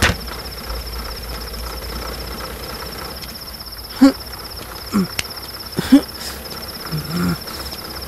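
Crickets chirring steadily in a high, pulsing trill. From about four seconds in, a man gives a few short, low grunts.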